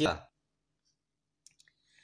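A spoken sentence ends, then near silence with a few faint clicks about a second and a half in and a soft breath-like hiss near the end.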